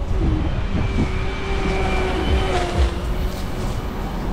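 Road traffic heard from a moving bicycle, with a low, gusty wind rumble on the microphone. A steady whine from a nearby vehicle holds for a couple of seconds in the middle.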